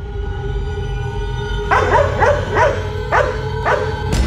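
A dog barking about five times in quick succession, starting a little under halfway through, over a steady low droning music bed.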